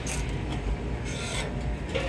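Steady low hum of kitchen room noise with brief rubbing noises, right at the start and again about a second in.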